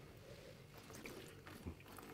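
Near silence: room tone with faint mouth sounds of red wine being sipped from glasses, and one short soft sound near the end.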